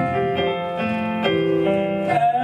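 Keyboard playing a short instrumental passage of held notes and chords that step to new pitches about every half second, in a gospel song's accompaniment.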